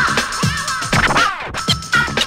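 Vinyl record being scratched on a turntable, cut in and out with the mixer, over a drum beat: quick back-and-forth pitch sweeps riding on kicks about every half second.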